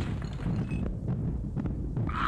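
A low, continuous rumbling sound effect of an earthquake shaking the room.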